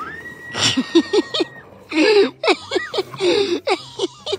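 People laughing in short, breathy bursts, with a long steady high-pitched squeal through the first second and a half.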